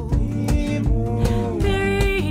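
Live acoustic band performance: strummed acoustic guitars and drum hits under several voices singing together in harmony.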